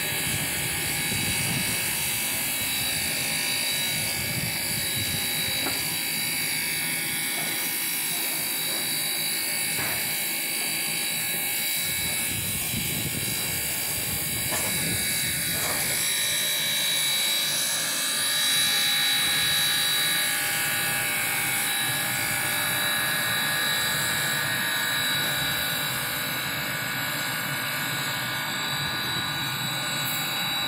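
Standing steam locomotive giving off a steady hiss and rumble of escaping steam and running machinery, with no clear rhythm.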